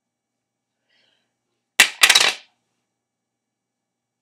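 Silence broken about two seconds in by one sharp click, followed at once by a brief rattling clatter lasting about half a second.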